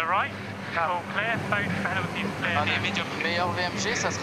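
Indistinct voices over a steady low mechanical hum.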